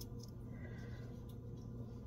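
Quiet room tone with a steady low hum and a few faint small clicks from a knife slicing a garlic clove held in the hand.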